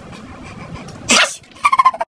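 An animal calling: a loud, short, harsh burst about a second in, then a short high-pitched call in quick pulses near the end.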